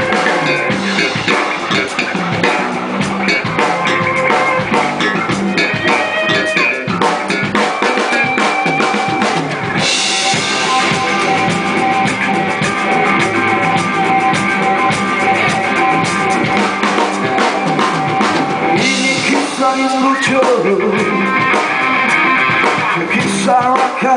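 Live rock band playing an instrumental passage: electric guitars, bass guitar and drum kit. The sound grows brighter and fuller for several seconds in the middle.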